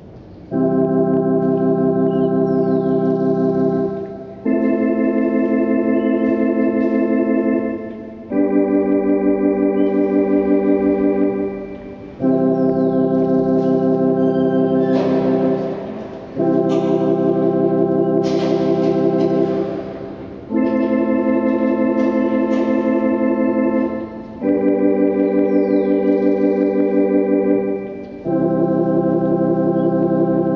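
Two-manual electronic organ playing a progression of held chords, eight in all, each sustained about four seconds before the next, with a fast tremolo wavering through the tone.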